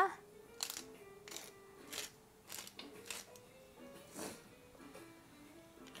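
Pepper grinder being twisted over a pan, about six short grinding strokes, with quiet background music underneath.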